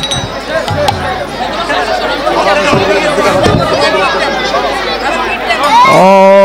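Hubbub of a large crowd of many voices talking at once, with music mixed in. Near the end a man's voice rises into a sustained chant.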